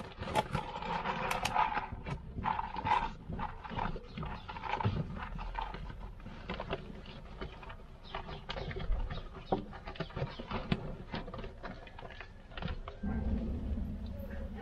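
Rabbit crunching dry feed pellets at a wooden feeder close by, a rapid irregular run of small crunches and clicks.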